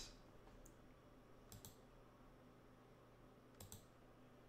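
Near silence with a few faint computer-mouse clicks: a quick pair of clicks about a second and a half in and another pair near the end.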